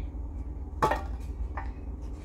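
Trading cards being handled, with one short sharp sound about a second in, over a steady low hum.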